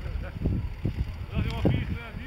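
Engine of a Volkswagen Kübelwagen running as the car sits stuck in deep snow, a low rumble that rises and falls, with people's voices and wind on the microphone over it.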